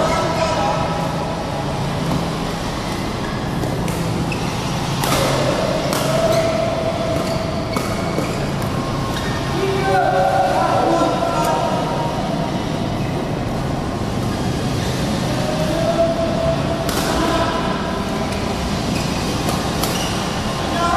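Indoor badminton hall ambience between rallies: scattered voices calling out over a steady low hum, with a few sharp knocks, the clearest about five seconds in and again near the end.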